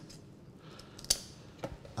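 Kitchen scissors snipping the bone out of a butterflied hake tail fillet: a sharp snip about halfway through and a fainter one just after.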